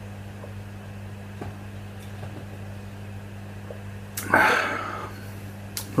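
A man drinking beer from a glass, with faint gulps over a steady low hum. About four seconds in comes a sudden loud breathy burst from him that fades within a second.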